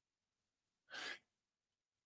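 One short, sharp breath drawn in through the mouth, about a second in, in near silence.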